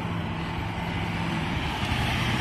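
Road traffic passing on a multi-lane street: a steady rush of car and truck tyres and engines, with a low engine hum that fades out about a second and a half in.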